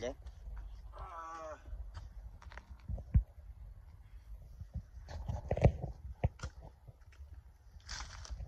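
A short wavering voice-like call about a second in, then scattered knocks and rustles of a man shifting out of a parked car, the loudest a single thump about three seconds in.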